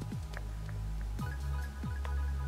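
Electronic background music: sustained deep bass notes and a kick drum whose pitch drops on each hit.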